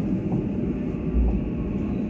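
Electric commuter train running into a station platform, heard from inside the driver's cab: a steady low rumble, with a brief deeper thump a little over a second in.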